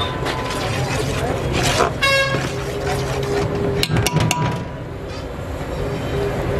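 A ladle stirring masala in a large aluminium pot, with a few quick metallic clinks about four seconds in, over a low steady hum. A short horn toot sounds about two seconds in.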